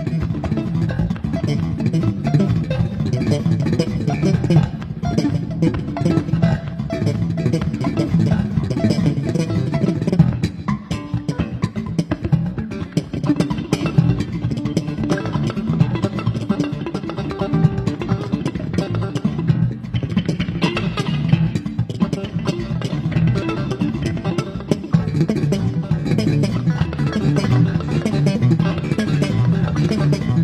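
Live instrumental band music: electric bass and electric guitar playing together with drums. The music drops back briefly about eleven seconds in.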